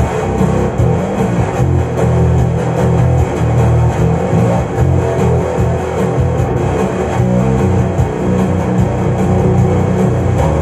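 Electric bass guitar played with the fingers, a steady stream of low notes carrying an instrumental stretch of a rock song.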